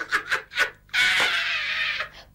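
A woman laughing loudly with her head thrown back: a few short bursts of laughter, then one long breathy laugh held for about a second.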